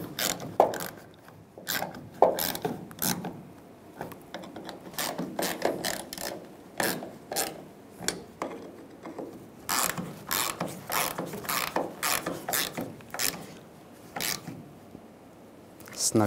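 Hand ratchet clicking in short runs, with pauses between, as bolts at the fuel filler opening are tightened down; the clicks thin out near the end.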